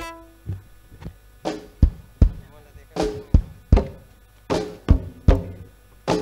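Band drums playing a sparse repeating figure of three low hits, the groups coming about every second and a half. It starts just after the last sung note and guitar chord fade out.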